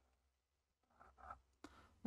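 Faint scratching of a pencil on card as a small reference mark is drawn, a few short strokes in the second half.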